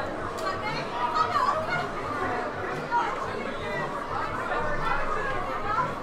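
Chatter of many voices talking at once, no single voice standing out.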